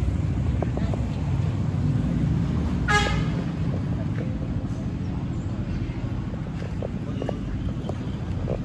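A short, single toot of a vehicle horn about three seconds in, over a steady low rumble.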